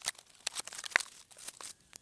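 Taped cardboard shipping box being opened by hand: packing tape tearing and cardboard crackling in a run of short rips and clicks, the sharpest about a second in.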